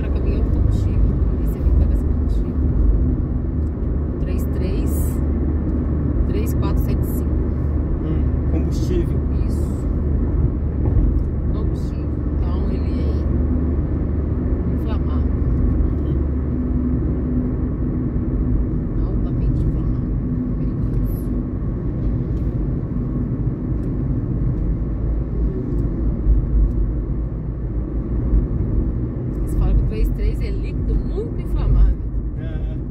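Car driving on an asphalt road, heard from inside the cabin: a steady low rumble of engine and tyre noise with a faint steady hum, and scattered short clicks.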